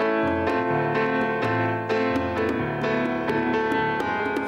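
Nord Electro stage keyboard playing a piano-sound passage: sustained chords over low notes that change about once a second.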